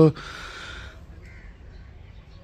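A crow cawing once, a harsh call a little under a second long, followed by a fainter short call.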